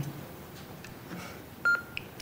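Bedside medical monitor giving a single short electronic beep, a clear high tone, about three-quarters of the way in, over quiet room tone.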